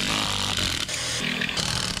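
Ryobi cordless impact driver running continuously under load, backing a screw out of a stainless steel bracket set in old teak.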